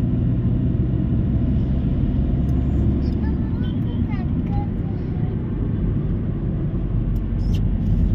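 Steady rumble of road and engine noise inside a moving car's cabin. Faint voices come through now and then.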